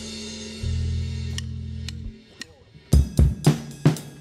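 Live bass guitar and drum kit: a cymbal rings away under held low bass-guitar notes, then the band drops to a near-pause with a few faint clicks. Near the end the drum kit comes back in with sharp kick and snare hits, about three a second.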